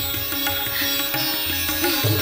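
Background music in Indian classical style: a plucked string instrument plays bending melody notes over a steady drone, with low bass notes underneath.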